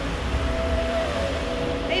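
Wind buffeting the microphone in a gusty low rumble over a steady rush of surf. A single spoken "hey" comes right at the end.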